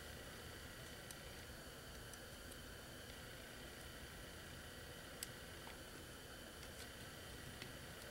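Faint steady room hiss with a few light, scattered clicks, the loudest about five seconds in: a thin steel oil-ring rail being worked by hand into the oil ring groove of a Chevy 350 piston.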